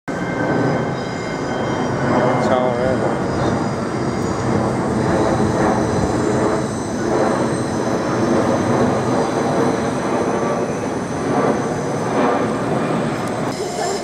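Twin-engine jet airliner passing low overhead: a steady rushing engine noise with a thin high whine, swelling and easing slightly as it goes over.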